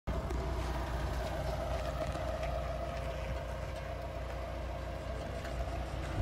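A vehicle engine idling: a steady low rumble with a faint steady hum over it.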